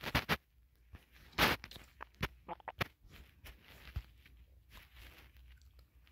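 Scattered light taps and clicks on a phone touchscreen, about a dozen irregular short clicks, thinning out after about four seconds.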